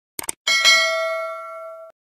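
A quick double click like a computer mouse, then a bright bell ding struck about half a second in, with a second strike just after. It rings on with a steady tone that slowly fades for over a second before it cuts off.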